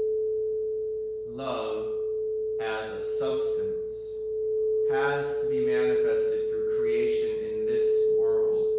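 Frosted quartz crystal singing bowl sung by circling a wand round its rim, holding one steady tone. A man's breathy voice sounds over it several times.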